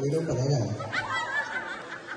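Laughter on stage: a low voice at first, then high, wavy laughing from about a second in.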